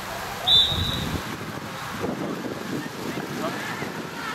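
One short referee's whistle blast about half a second in, over wind buffeting the microphone and faint shouts from players on the pitch.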